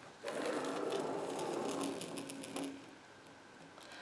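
Drawing wheel marking a curved line on paper as it is run along the edge of an acrylic circle ruler: a steady scratching with fast faint ticks that dies away after about three seconds.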